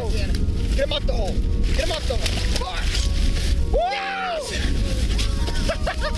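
Wind rumbling on the microphone, with excited wordless whoops and yells rising and falling in pitch, the longest one about four seconds in. Short crunching and scuffing sounds come from the men moving on packed snow and ice as they haul a big brook trout out of the hole.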